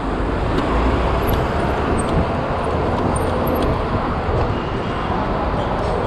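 Steady rushing noise of a mountain bike being ridden along a city street, with traffic noise around it.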